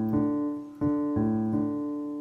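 Piano playing single low left-hand notes, alternating between D and the A below it, each note ringing on and fading before the next is struck; three notes sound.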